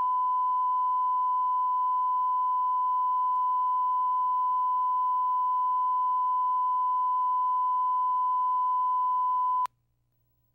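Steady 1 kHz line-up tone, the audio reference that accompanies colour bars at the head of a broadcast videotape for setting levels. It is a single unwavering pure tone that cuts off abruptly just before the end.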